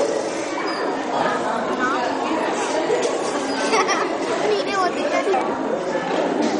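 Chatter of many children's voices at once, a steady overlapping hubbub with no single voice standing out.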